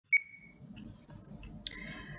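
A short electronic beep, one clear tone that fades out within about half a second, then faint background noise and a single click about a second and a half in.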